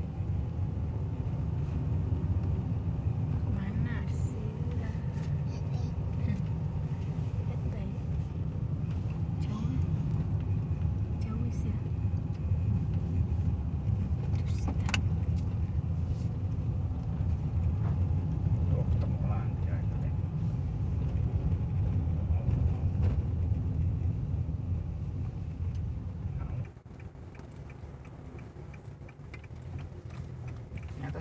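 Car interior noise while driving: a steady low rumble of engine and tyres on the road, with scattered light clicks and rattles from the cabin. The rumble drops suddenly quieter about 27 seconds in.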